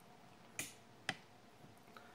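Two short, sharp clicks about half a second apart.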